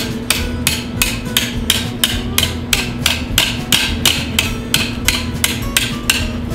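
A steel hammer striking the face of a homemade railroad-track anvil mounted on a log stump. It is a steady run of sharp metal-on-metal blows, about three a second, kept up throughout.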